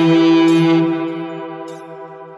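A sustained electric guitar note ringing out on its own, rich in overtones, at the end of a hip-hop prelude; it holds for about a second and then fades away.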